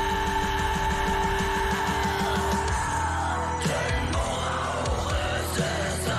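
A German metal song with a female singer: a long held note over rapid bass-drum strokes, then about three seconds in the held note ends and shorter, harsher vocal lines follow over the band.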